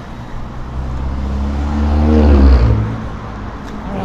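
A car passing close by. Its engine grows louder to a peak about two and a half seconds in, then drops in pitch and fades as it goes past.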